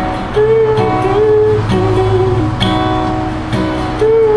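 Live acoustic guitar played solo: picked melody notes over strummed chords, in a phrase that repeats.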